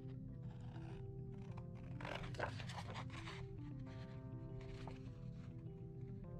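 Background music, a simple melody of held notes, with scissors snipping through cardstock faintly underneath, most plainly about two seconds in.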